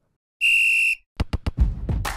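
A single short, steady, high-pitched whistle blast, referee-whistle style, followed by a quick run of sharp percussive hits as intro music kicks in.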